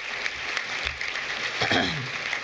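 Audience applauding: a steady patter of many hands clapping, with a brief voice near the end.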